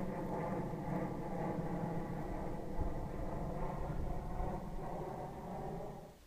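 Electric motor and propeller of an FPV flying wing running steadily under power, a constant buzzing drone of even tones over a low rumble, heard through the aircraft's onboard microphone.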